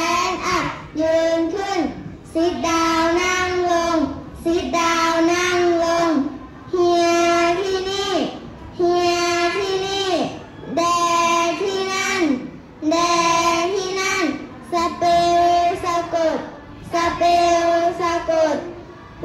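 A class of young children chanting vocabulary aloud in unison, in a drawn-out sing-song: each English word and its Thai translation held for a second or so, the pitch falling at its end, with short breaks between.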